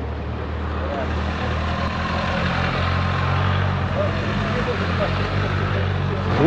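A motor vehicle's engine running as it drives slowly past, a steady low hum that swells toward the middle and eases off slightly.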